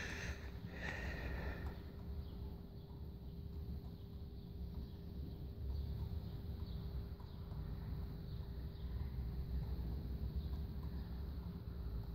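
Three juggling balls caught and tossed by hand, giving faint, fairly regular soft pats, over a low rumble and a steady hum. A short hiss sounds near the start.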